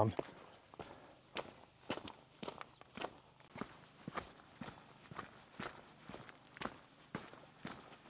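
Faint footsteps of a hiker walking along a mountain path at a steady pace, about two steps a second.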